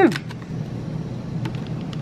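A few faint clicks and crackles of a clear plastic clamshell pack being handled, over a steady low hum.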